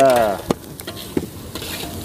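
A metal ladle stirring in a steel wok of aromatics frying in oil over a wood fire: a few sharp clinks of metal on metal over a faint sizzle.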